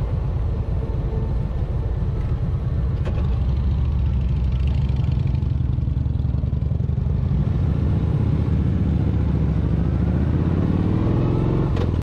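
V-twin touring motorcycle engine running at low speed through a stop-sign turn, a steady low rumble, rising in pitch near the end as it speeds up.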